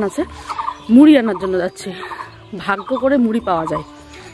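A woman's voice talking, in bursts with short pauses.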